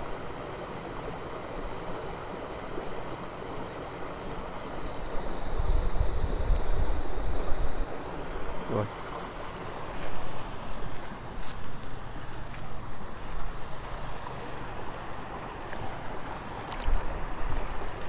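Stream water running steadily, with gusts of wind rumbling on the microphone partway through.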